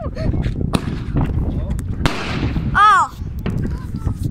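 New Year's fireworks going off around the street: a steady run of cracks and bangs over a low rumble, with a brief hiss about two seconds in. A short voice-like call is heard near three seconds.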